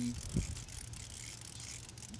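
Socket ratchet clicking as a spark plug is loosened from the engine, with one sharp knock about half a second in.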